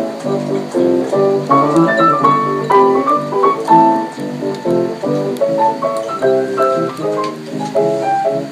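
Upright piano played four hands in jazz style, with a steady stream of quick chords and melody notes.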